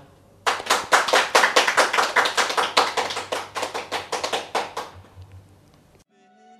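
Hands clapping: a quick, even run of claps, about five a second, that starts about half a second in and fades out near the end.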